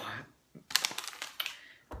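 A quick clatter of many small, sharp clicks, lasting a little under a second, starting just before the middle: small hard objects being handled or knocked together.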